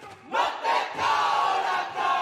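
A large group of voices chanting loudly together in Māori, breaking in sharply about a third of a second in and then holding on.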